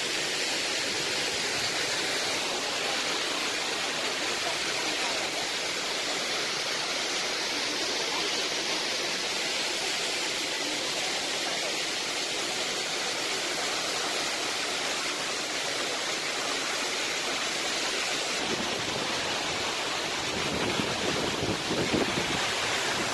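Waterfall pouring down a mossy rock face: a steady rush of falling water, growing fuller and deeper near the end.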